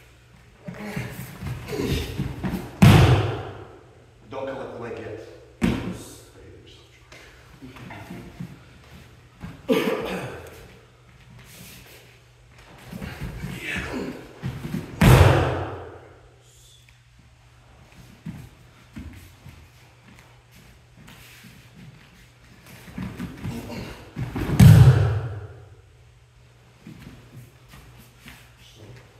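Bodies landing hard on padded foam dojo mats as a kani basami scissor throw is done again and again: three heavy thuds roughly twelve seconds apart, with lighter thumps and shuffling between them.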